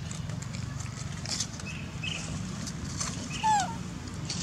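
A baby macaque gives one short, high squeal that arches and falls away, about three and a half seconds in. It comes over faint clicks, rustling and a low steady background rumble.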